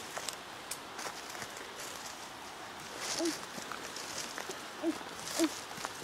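Footsteps and rustling of ferns and undergrowth as people push down a steep forest path, with a few faint clicks early on. Three short low vocal sounds come in the second half.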